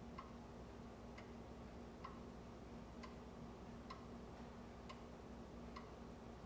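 A clock ticking faintly, about once a second, over a low steady hum.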